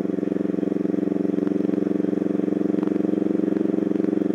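Kawasaki Vulcan 500 motorcycle engine running at a steady cruise, an even drone that holds one pitch, with a fainter hiss of wind and road above it.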